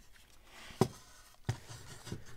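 Two light, sharp knocks about 0.7 s apart as the hard plastic body of a micro RC pickup truck is handled and set down on a wooden tabletop, with soft rubbing between them.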